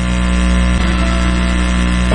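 A steady, loud hum made of many evenly spaced tones with a strong low drone underneath, unchanging throughout.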